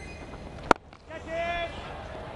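Cricket bat striking the ball: a single sharp crack about two-thirds of a second in, the shot lofted high toward the boundary. A brief voice call follows over steady stadium background noise.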